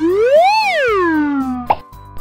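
Cartoon sliding sound effect: one pitched 'whee' that rises for about half a second and then falls back down, ending in a short plop near the end. Light background music runs underneath.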